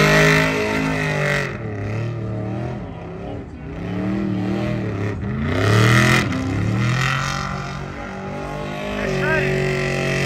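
Car engine revving up and down in a smoky burnout, with bursts of tyre hiss near the start and again about six seconds in.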